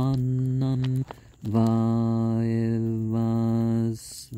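A man's voice chanting a Sanskrit Vedic verse in long, level, held tones: one note for about a second at the start, then a longer one from about a second and a half in until near the end.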